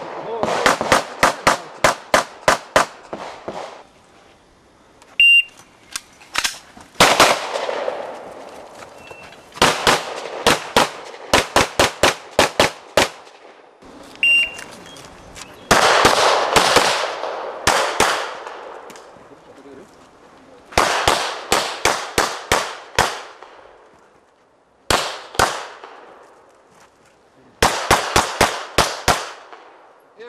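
Strings of rapid pistol shots, fired in quick pairs and short runs with brief pauses between them, from Glock pistols in a practical shooting stage. A shot timer's short, high electronic beep sounds before strings about five and fourteen seconds in.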